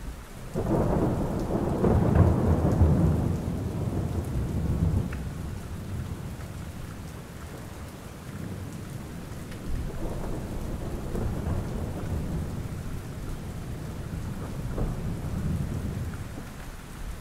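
Steady rain with a long roll of thunder that swells up about half a second in and dies away over several seconds, then a second, softer rumble about ten seconds in.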